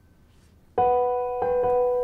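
Background piano score: after a near-quiet start, a loud sustained piano chord comes in suddenly about three-quarters of a second in, followed by a few more notes.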